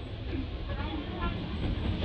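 A steady low rumble of outdoor background noise with faint voices, and a few short high squeaks about a second in.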